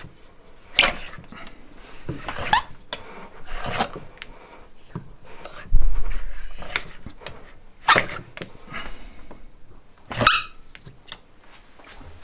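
Compressed air puffing out from under a palm held over the open cylinder bores of a small Hoglet model V-twin engine as its pistons are worked by hand, a compression test of freshly fitted O-ring piston rings that are sealing well. There are several sharp puffs one to two seconds apart and a heavy dull thump about six seconds in.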